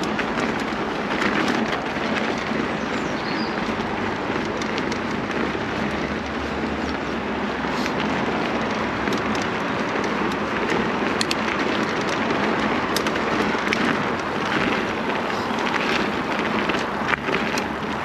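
Mountain bike tyres rolling over a dirt-and-gravel trail: a steady rush of rolling noise with scattered sharp clicks from grit and the bike's parts, most around the middle and near the end.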